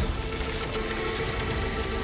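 Film soundtrack playing: music under a dense, hissing wash of sound effects.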